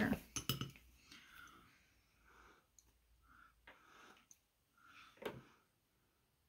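Faint clicks and clinks of a bubble wand against a small glass bowl of dyed bubble mix, with several short, soft puffs of breath blowing bubbles onto paper. A brief knock comes near the end.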